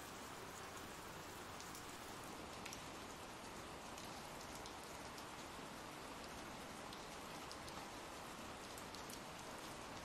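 Ambient rain sound effect: soft, steady rainfall with faint scattered drop ticks.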